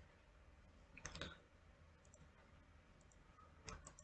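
Faint computer mouse clicks: a short cluster about a second in, a couple of fainter single clicks, and another cluster near the end.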